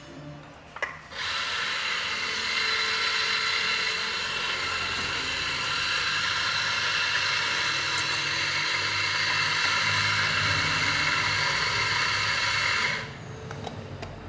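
Electric coffee grinder grinding espresso beans: one steady run of motor and burr noise that starts about a second in and stops suddenly near the end.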